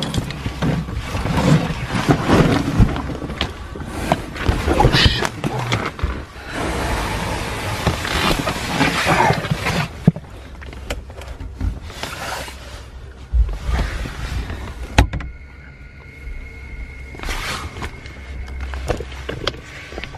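Scuffling, rustling and knocks as people clamber into a cramped space and pull a door to, with the camera jostled. About fifteen seconds in it turns quieter, with a low, held music drone and a few sharp knocks.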